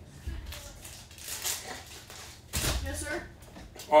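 Trading cards being handled over a table: short taps and rustles as cards are slid and shuffled, with one louder rustle and thud about two and a half seconds in.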